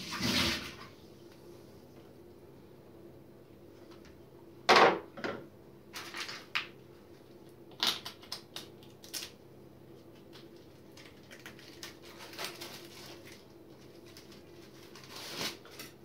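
Plastic reverse-osmosis filter housing and parts being handled: a short rush of noise at the very start, a loud knock about five seconds in, then scattered lighter clicks and knocks.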